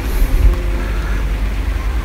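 Steady rain falling on leafy trees, with a low rumble underneath.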